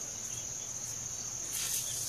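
Insects chirring steadily in a high, continuous buzz, growing a little louder about one and a half seconds in.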